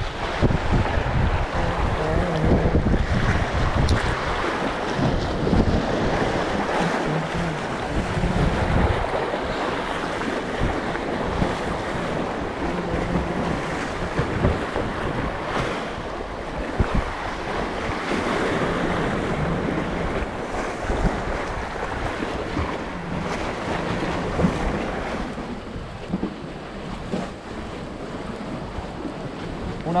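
Sea waves washing and breaking against the concrete blocks of a breakwater, with wind buffeting the microphone. The wind rumble is heaviest in the first several seconds, then the surf wash goes on more steadily.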